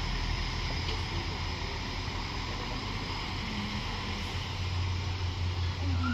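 Alstom Coradia LINT 54 diesel multiple unit running, a steady low engine drone that grows louder in the second half.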